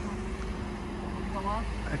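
Toyota forklift's engine running steadily as the forklift maneuvers up to a van, a low steady hum with a faint voice briefly about one and a half seconds in.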